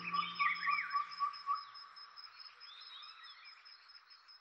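Background music fading out about a second in, leaving birds chirping over a steady high pulsing trill.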